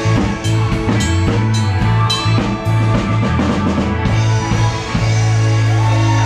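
A live rock cover band playing, the drum kit heard up close with a steady beat of drum and cymbal hits over bass and keys. About five seconds in the drums stop and the band holds a sustained chord.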